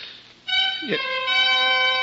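Dramatic orchestral underscore: a sustained string chord swells in about half a second in, held steady beneath a man's voice.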